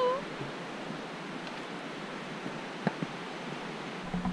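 Footsteps on a dirt forest trail, with a couple of sharper knocks from steps or a walking staff near the end, over a steady rushing hiss.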